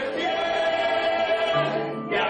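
A group of voices singing a song together, backed by acoustic guitars, holding long notes at a steady level.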